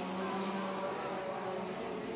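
Race car engines running around a dirt oval track, heard from a distance as a steady drone whose pitch drifts slowly as the cars circle.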